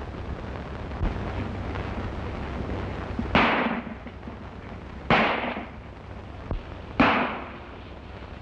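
Three gunshots, each with a short echoing tail, the shots a little under two seconds apart, heard over a steady low hum with a couple of fainter clicks.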